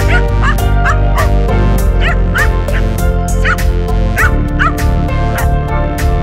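A small dog barking over background music with a steady beat.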